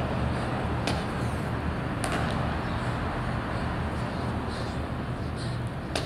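A steady low mechanical hum under a noisy wash, with a few faint thuds from hands and feet landing on a concrete floor during burpees, about a second in, about two seconds in, and near the end.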